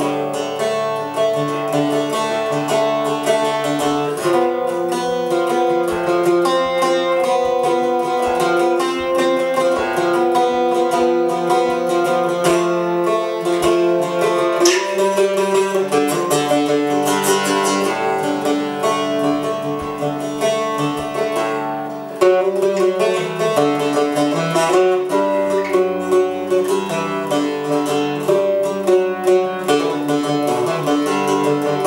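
1907 Gibson K-1 mandocello, an eight-string, four-course bass member of the mandolin family, played solo. A continuous flow of plucked notes and chords, with a brief dip in loudness about 22 seconds in before a strong strum.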